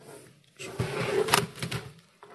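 Handling noise: a cluster of knocks and rustling about a second long, loudest in the middle, as something is moved or handled close to a microphone.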